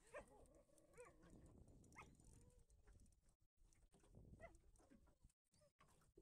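An excited dog whining faintly in a few short whimpers.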